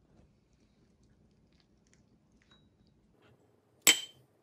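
Faint soft handling sounds of a metal spoon scooping ripe mango flesh, then one sharp clink near the end as the spoon strikes the ceramic bowl, ringing briefly.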